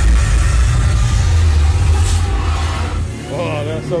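Loud haunted-house sound effects: a low rumble with a hiss over the soundtrack music, starting suddenly and easing off about three seconds in. A voice comes in near the end.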